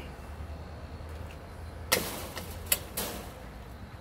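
Three sharp knocks over a low steady hum. The first and loudest comes about halfway through, and two more follow within the next second.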